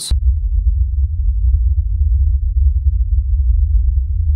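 A loud, deep sub-bass drone with nothing higher above it, starting suddenly as the voice stops and holding steady: an edited-in transition sound effect.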